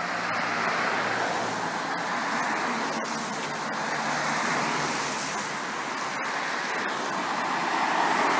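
Cars passing on a wet road, their tyres hissing on the wet tarmac; the hiss swells as each car goes by, about a second in, again around the middle, and near the end.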